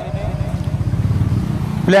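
A vehicle engine running with a fast, low pulsing, close enough to stand out during a pause in the speech; a man's voice comes back in near the end.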